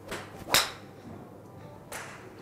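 Titleist TSi2 13.5° fairway wood swung at a ball: a brief rush of the downswing, then the sharp crack of the clubhead striking the ball about half a second in. A shorter, fainter click follows near the end.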